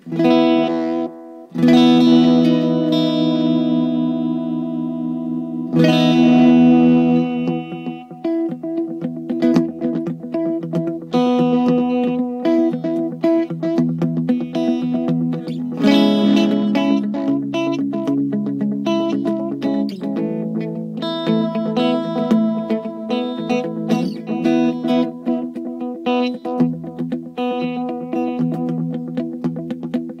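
Electric guitar (a Les Paul copy with DiMarzio pickups) played through a Zeropoint delay pedal in tape mode into a small Fender Vibro Champ amp. Full chords ring out at the start, about six seconds in and about sixteen seconds in, with runs of quicker picked notes between them, all carried on echo repeats.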